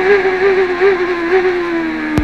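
A CART Champ Car's 2.65-litre turbocharged V8, heard from the onboard camera: one high, steady engine note whose pitch falls slowly as the revs drop, the car slowing ahead of the next corner.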